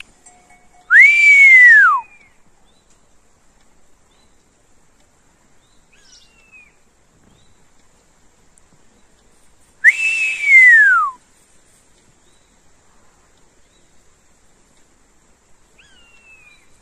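Two loud mewing 'peee-oo' calls of the common buzzard type, each a single whistle falling in pitch over about a second, one near the start and one about ten seconds in. Fainter calls of the same shape answer about six seconds in and again at the end.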